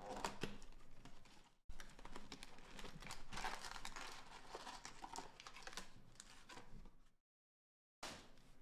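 Hands opening a cardboard trading-card box and handling the plastic-wrapped card packs inside: a steady run of crinkling, rustling and small clicks and taps. The sound drops out for a moment about a second and a half in and cuts out completely near the end.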